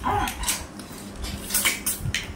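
People sucking cooked freshwater snails out of their shells: a few short, sharp slurps, with shells clicking on plates.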